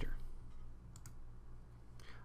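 Quiet room tone with a steady low hum and a single faint click about a second in.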